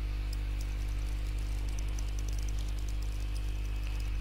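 Steady low electrical hum with a stack of steady overtones, the background noise of the recording set-up, with a faint rapid high ticking that comes and goes.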